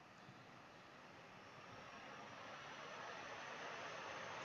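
Near silence: a faint, steady hiss of background noise that slowly grows a little louder.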